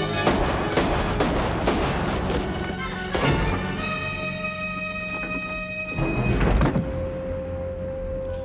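Film score music with sustained held notes under a quick run of thuds and impacts over the first three seconds, then a heavier, louder hit about six seconds in.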